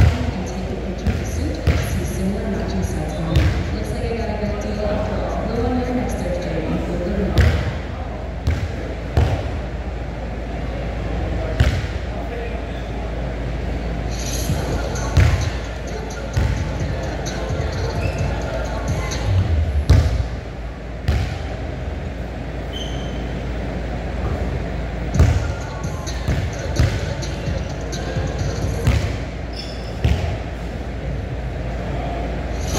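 A basketball bouncing and being dribbled on a gym floor, sharp single thuds at irregular intervals of one to a few seconds, ringing in a large hall. Indistinct voices talk in the background, mostly in the first few seconds.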